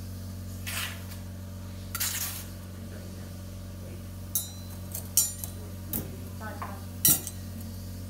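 Metal surgical instruments clinking several times, with a few short rustles, over a steady low hum.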